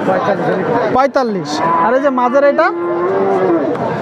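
A cow mooing: one long, steady low call lasting about two seconds, beginning with a downward slide in pitch, over the chatter of people.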